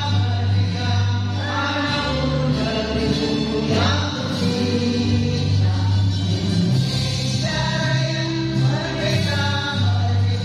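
A group of women singing together in unison with musical accompaniment, led by a conductor.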